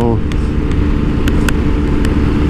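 Motorcycle cruising at steady freeway speed: a constant engine drone with the rush of riding wind, holding one even pitch.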